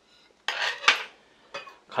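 Metal spoon scraping and clinking against a stainless steel bowl, ending in one sharp clink about a second in, with a faint tick near the end.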